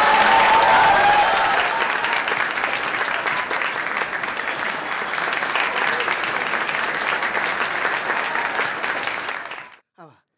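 Audience applauding: a hall full of people clapping steadily, fading out just before the end.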